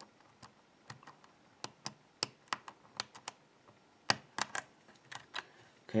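Irregular sharp metallic clicks of a hook pick working the pin stacks of a BKS euro-cylinder lock under a tension wrench, with a louder cluster of clicks about four seconds in.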